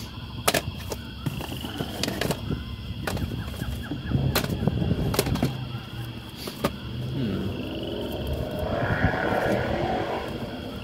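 Plastic DVD cases clacking against one another as they are flipped through and shifted in a cardboard box: a handful of sharp, separate clicks with some rustling handling noise.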